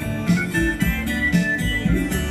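Live acoustic guitar playing an instrumental passage, with repeating bass notes and a steady low beat about twice a second.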